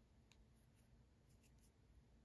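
Near silence, with a few faint soft ticks from a metal crochet hook and cotton yarn being handled.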